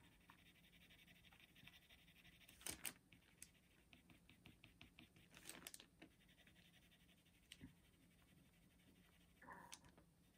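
Very faint scratching of a watercolour pencil lead moving over drawing paper in quick short strokes, with a few slightly louder scratches.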